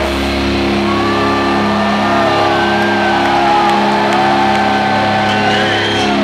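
Heavy-metal band's final chord ringing out live through the PA, as steady sustained amp tones after the heavy low end drops away about half a second in, with the crowd shouting and whooping over it.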